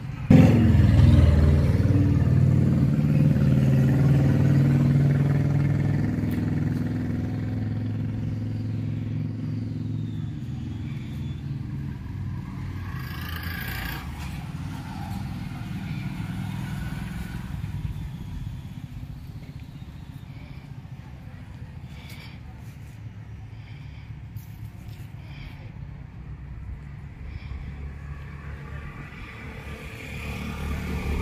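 A motor vehicle's engine running close by, coming in suddenly near the start and fading away over about ten seconds, then steady quieter traffic noise.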